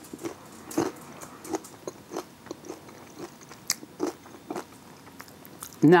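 Chewing a mouthful of crisp microwaved cheese taco shell, a crunch with each chew about twice a second.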